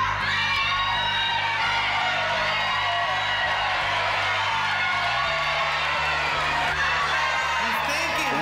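Suspense music of sustained low bass notes that step to a new chord about five seconds in, with studio audience members whooping and shouting over it.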